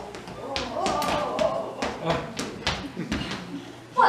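Footsteps tapping on a hard stage floor as someone walks on: a quick, irregular run of clicking steps.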